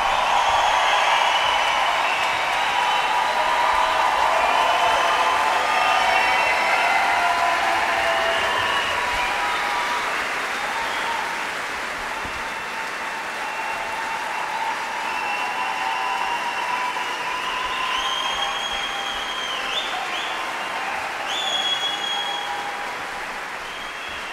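Concert audience applauding and cheering after an orchestral performance, with a few whistles near the end, slowly dying away.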